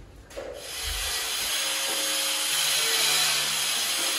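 A power tool working wood: a steady rasping hiss that starts a moment in and holds without a break.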